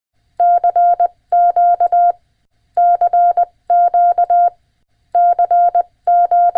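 Morse code sent as a single steady beep tone, keyed in long and short elements (dashes and dots) that come in groups of about a second with short pauses between.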